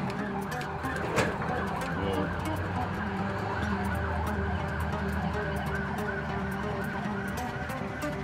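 Police siren sounding steadily and wavering in pitch, with a single sharp click about a second in.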